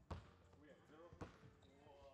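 A few faint thuds of a basketball bouncing on a hardwood gym floor, with faint voices in the background.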